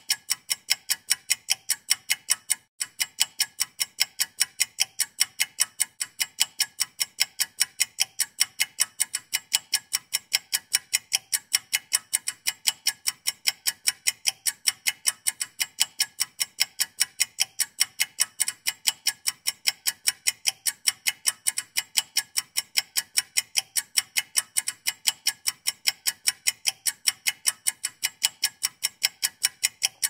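A ticking-clock sound effect: fast, even ticks with one brief break a few seconds in. It marks a fast-forward through skipped work.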